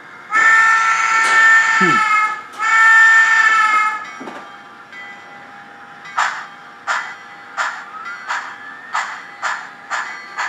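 A SoundTraxx sound decoder in a Blackstone HOn3 C-19 model steam locomotive plays two long steam-whistle blasts. About six seconds in, exhaust chuffs start, roughly one and a half a second and quickening slightly as the locomotive pulls away. The chuffs are timed by an optical cam to four per driver revolution.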